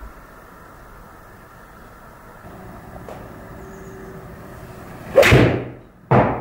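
A PXG 0311T iron strikes a golf ball off a hitting mat about five seconds in: one loud, sharp impact that fades over about half a second. The shot was struck off the toe.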